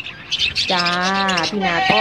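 Budgerigars chirping in quick, high twitters, a cluster just after the start and more near the end.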